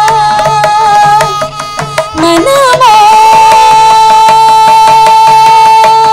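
Carnatic vocal music: a woman singing a kriti with violin and mridangam accompaniment. After some ornamented, gliding phrases the melody settles about halfway in on one long held note, while the mridangam keeps up a quick run of strokes.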